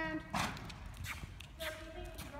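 A horse being ridden: faint hoofbeats, with a short breathy noise burst about half a second in. A voice trails off at the very start.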